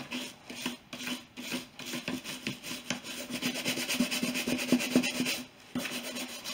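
Soft leather brush scrubbing the grained Epi leather of a Louis Vuitton bag, wet with liquid glycerin saddle soap, in repeated back-and-forth strokes. The strokes are slower at first and quicken about two seconds in, with a brief stop near the end.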